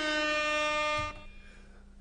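Air horn sound effect: one long, steady blast that cuts off about a second in.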